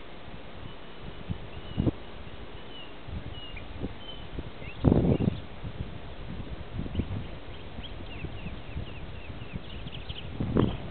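Irregular low thuds and rumbles, the loudest about five seconds in, with small birds chirping faintly in the background.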